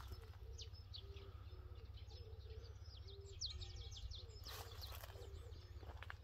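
Faint chirping of small birds: quick, high, down-slurred notes that cluster about two to four seconds in, over a steady low background rumble.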